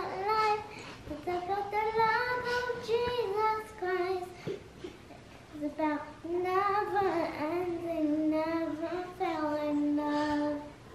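A young girl singing a song alone, unaccompanied, in held sung notes, with a short break near the middle and a long held note near the end.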